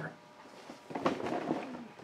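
Quiet room, then about a second in a sharp click followed by rustling and small knocks of things being handled.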